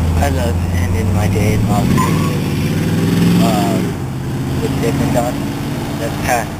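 A motor vehicle's engine running close by, its low hum rising in pitch for a second or two and then dropping suddenly about four seconds in.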